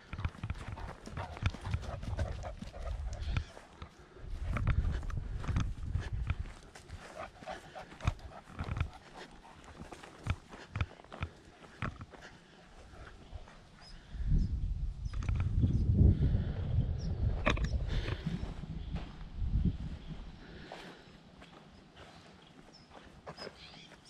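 Footsteps of a person walking over dry grass and dirt, a run of short irregular crunches. Stretches of low rumbling noise sit on the microphone, the longest a little past the middle.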